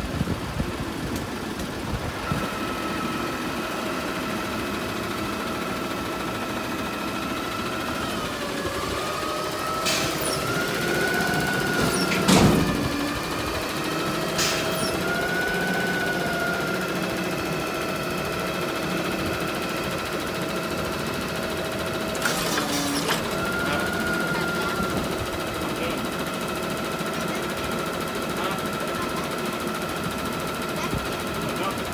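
A garbage truck running beside the camera, with a steady mechanical whine that dips and rises in pitch a few times, and a few sharp bangs, the loudest about twelve seconds in.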